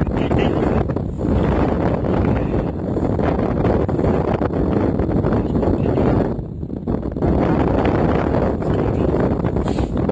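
Loud wind buffeting the microphone, a dense rumbling noise that eases off briefly about six and a half seconds in.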